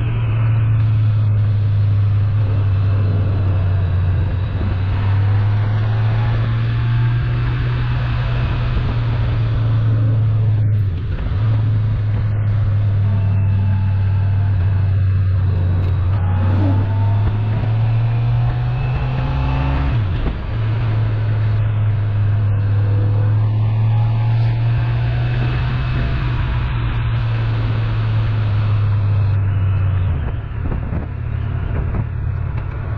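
Motorcycle engine running steadily at road speed, a strong low drone under a wash of wind and road noise, the drone breaking briefly twice, about eleven and twenty seconds in.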